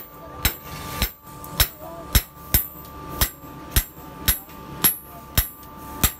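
Hand hammer striking a steel knife blade on an anvil during forging: a steady run of about ten sharp blows, roughly two a second.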